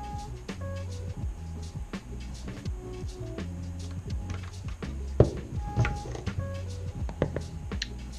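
Mellow background music with a steady bass line, over the clicks and knocks of plugs and cables being handled as a LiPo battery's XT60 plug is pushed into a parallel charging board. The loudest is a sharp click about five seconds in.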